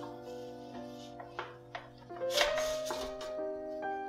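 Soft background music with long sustained notes. Under it, a few light clicks and a brief rustle as a cloth-draped ceramic plate is lifted off a stainless steel steamer pot.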